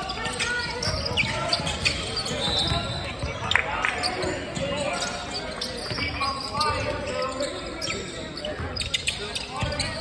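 A basketball bouncing on a hardwood court during play, short knocks scattered through, under a steady background of indistinct voices from players and spectators, echoing in a large gym.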